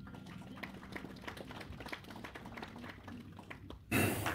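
Faint room noise with scattered small clicks and rustles, and no music or speech.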